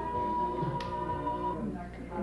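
Recorded flute music playing: a long, high held note that fades about one and a half seconds in. A single sharp click comes near the middle.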